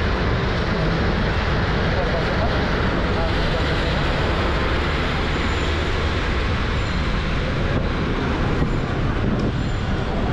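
Steady engine and road noise heard from inside a moving city bus.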